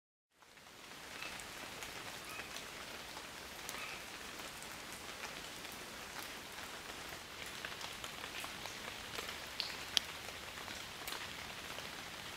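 Faint, steady hiss dotted with scattered light clicks and ticks, with one sharper tick about ten seconds in.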